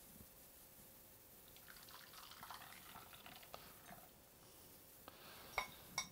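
Faint pouring and dripping of curdled milk and whey through a cheesecloth-lined strainer into a metal bowl, followed by a few light clinks of a wire whisk against a glass bowl near the end.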